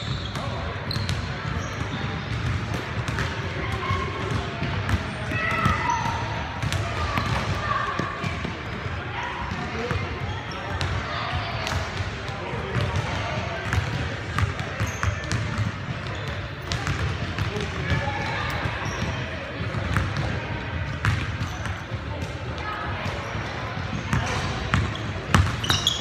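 Basketball game on a hardwood gym court: the ball bouncing and striking repeatedly, with players' voices calling out now and then, over a steady low rumble.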